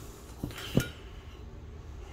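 A light knock and then a sharp metallic clink with a brief ring, as a cast aluminium engine side cover is picked up and handled among metal parts on the bench.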